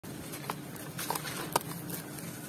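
A crumbly sand-cement block crushed by hand into dry sand and cement powder: a steady gritty crunching with a few sharp cracks as pieces break off, the loudest about one and a half seconds in.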